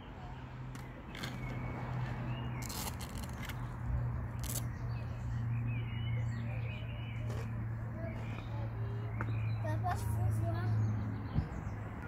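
Outdoor ambience: a steady low hum with faint chirps and a few light clicks.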